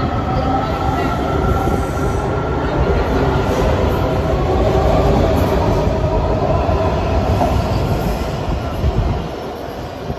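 A Washington Metro 7000 Series subway train departing and accelerating past, its wheels and running gear rumbling with high whining tones that drift in pitch. The noise builds as the cars pass and fades near the end as the train pulls away.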